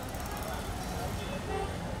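Steady low rumble of street traffic and an idling car, with faint indistinct talk over it.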